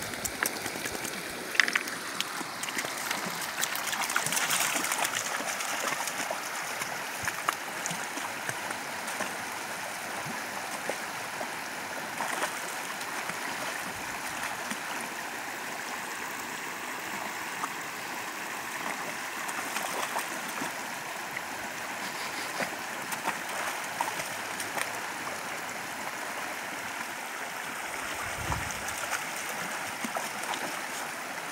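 Shallow creek water running over rocks: a steady rushing and burbling, a little louder about four seconds in.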